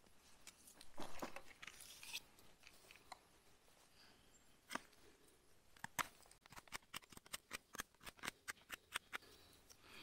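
FoxEdge Atrax folding knife whittling a point on a small wooden stick: faint, scattered scrapes and shaving cuts, then a quick run of short, sharp carving strokes, about four or five a second, in the second half.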